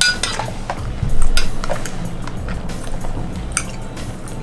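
Cutlery clinking and scraping against a plate in quick, irregular strokes, loudest about a second in, over background music.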